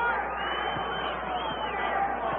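Arena basketball crowd noise, a steady mass of cheering and chatter reacting to Indiana drawing a charging foul, with a high whistle that rises and falls over about a second and a half partway through.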